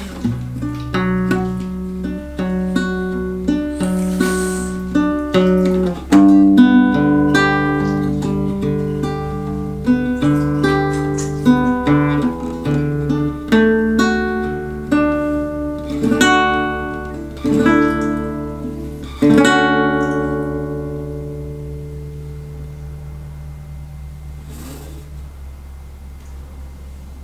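Classical guitar played fingerstyle: a slow melody of single plucked notes over held bass notes. A final chord about three-quarters of the way through rings out and slowly fades away.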